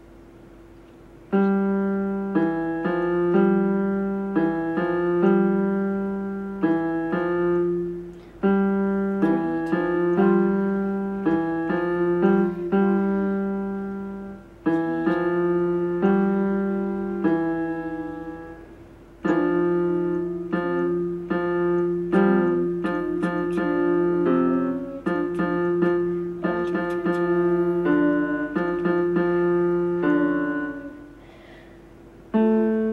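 Electronic keyboard on its piano voice playing a simple beginner's tune, note by note in short phrases with brief breaks between them. Each note fades as it is held, and lower notes sound under the melody.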